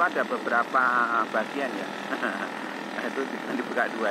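A person's voice-like calls repeated in short bursts with a wavering pitch, most of them in the first second and a half, over the steady drone of a moving vehicle's engine.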